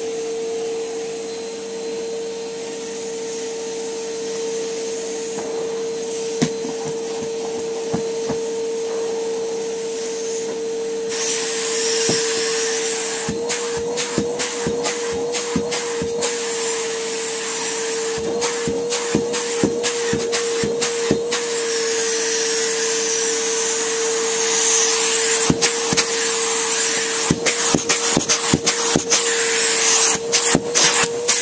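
A Numatic Henry canister vacuum cleaner runs with a steady motor hum. About eleven seconds in, the rushing hiss of air grows much louder. From then on, many quick knocks and taps come from the hose and nozzle as they are worked over the carpet, most thickly near the end.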